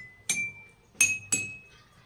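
A metal spoon clinking against drinking glasses of red drink: four strikes in two quick pairs, each leaving a brief ringing tone.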